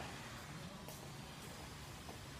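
Faint room tone of a workshop, with a single light click about a second in.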